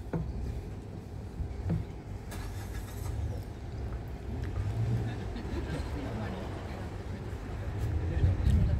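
Steady low rumble of road traffic, swelling now and then as vehicles pass, with a paper wrapper crinkling briefly a couple of seconds in.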